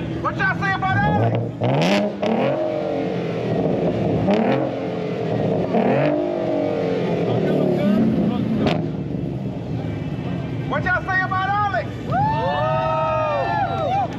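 Ford Mustang revved repeatedly, its engine note sweeping up and falling back, with sharp exhaust bangs as it shoots flames from the tailpipes, four cracks about two seconds apart. Near the end come higher rising-and-falling pitched sounds.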